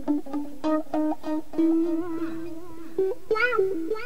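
Guitar music from a home Tascam four-track recording: picked guitar notes ring over a held low note, and wavering notes with vibrato come in near the end.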